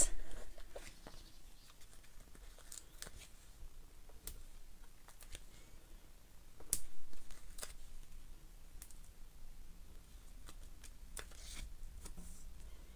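Faint, scattered clicks and crinkles of paper handling as foam adhesive dimensionals are peeled off their backing sheet and pressed onto a paper tag, with a louder rustle about seven seconds in.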